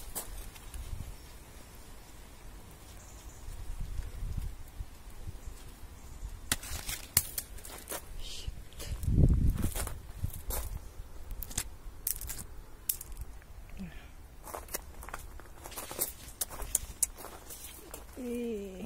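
Footsteps across grass and fallen leaves, with a run of sharp clicks and crackles from about six seconds in and one dull thump about nine seconds in.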